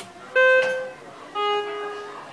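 A click of an elevator call button, then the KONE elevator's two-note arrival chime: a clear high tone, then a lower one about a second later, each ringing for about half a second. It signals a car arriving to travel down.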